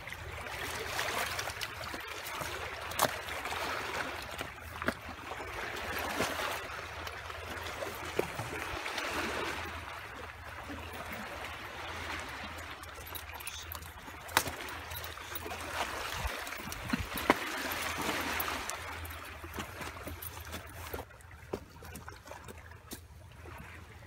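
Water washing and trickling among shoreline rocks, a noisy hiss that swells and fades every few seconds over a low rumble, with a few sharp clicks.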